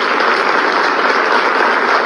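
Large audience applauding steadily, the dense clapping of a full conference hall.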